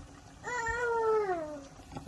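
A single long, high-pitched animal call, about a second long, wavering slightly and then falling in pitch at the end.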